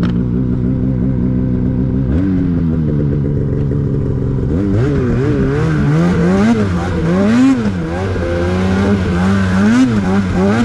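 Polaris two-stroke mountain snowmobile engine, running steadily and then rising in pitch about two seconds in as the sled pulls away. From about five seconds in the revs repeatedly climb and drop as the throttle is worked while riding through snow, reaching about 7,500 rpm.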